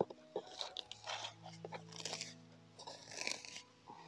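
Faint rustling and crunching of leafy garden plants and weeds being parted and handled, in a few short bursts.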